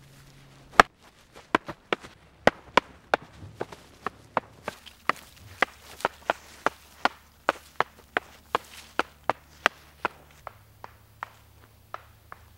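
A long run of sharp clacks, about two to three a second, the loudest about a second in, as prop lightsabers strike each other in a duel.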